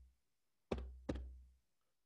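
Two dull knocks about half a second apart, each with a short low boom after it. They are one pair in a steady two-beat pattern that repeats about every second and a half.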